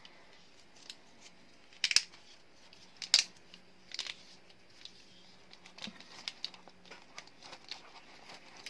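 A few sharp clicks and taps as a metal dumpling press and plastic dumpling moulds are handled on a worktop, with smaller ticks near the end. A faint steady hum sits underneath.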